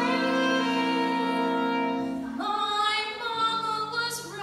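A woman singing a long held note in a jazz-blues song over instrumental accompaniment; the notes change to a new chord about two and a half seconds in.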